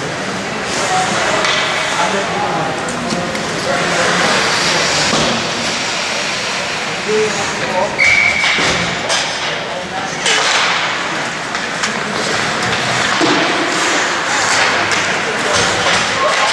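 Indistinct voices echoing in an ice hockey rink, with skates scraping the ice and sticks and puck knocking on the ice and boards. A brief steady high tone sounds about eight seconds in.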